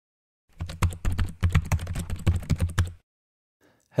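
A quick, uneven run of typing keystrokes, each click with a dull thud under it, lasting about two and a half seconds and stopping abruptly.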